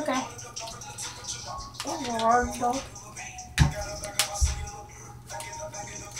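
A child-proof Alka-Seltzer foil packet being worked open by hand, giving a couple of short sharp crinkles or clicks about three and a half and four seconds in, over steady background music and a brief low voice.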